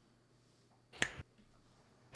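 A single short, sharp click or snap about halfway through, with quiet around it.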